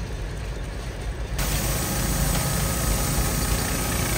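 A river barge's diesel engine running steadily. About a second and a half in, the sound suddenly turns louder and harsher.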